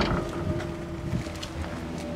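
Porsche 912's air-cooled 1.6-litre flat-four engine idling steadily.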